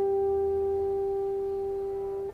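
Electric guitar holding a single clean, pure-sounding note that rings on and slowly fades.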